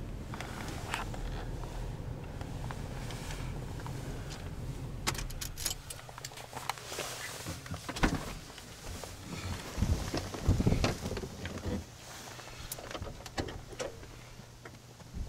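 Knocks, clicks and rustles of handling and movement inside a van's cabin, over a low steady hum that drops away about six seconds in. A few heavier thumps come around ten seconds in.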